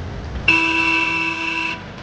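A vehicle horn honks once, a steady note of a little over a second that starts and cuts off abruptly, over the low rumble of road traffic.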